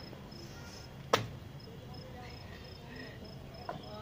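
A single sharp knock about a second in, over a low steady background hum, with a faint high-pitched chirp repeating in short pulses.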